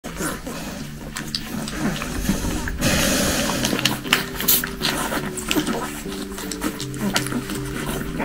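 One-week-old Presa Canario puppies make short, repeated squeaks while they jostle to nurse. There is a brief noisy rustle about three seconds in. Background music with sustained low notes plays underneath.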